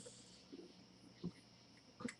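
Near silence: room tone with faint hiss, broken by a short faint click a little past a second in.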